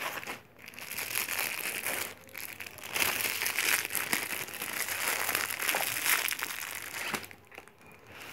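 Clear plastic wrapping crinkling as it is handled, in a dense run of crackles that grows louder about three seconds in and dies away near the end.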